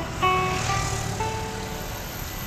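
Acoustic guitar played solo in a classical style, a few single plucked notes of a slow melody, each left to ring, over a low background rumble.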